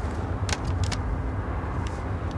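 Steady low road rumble heard inside a moving car's cabin, with a few light clicks between about half a second and a second in and one more near the end.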